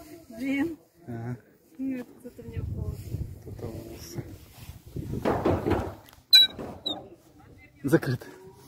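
Indistinct voices of people talking, with a sharp, ringing click a little after six seconds in.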